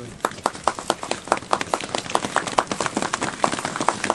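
A small group of people applauding with sharp, uneven hand claps.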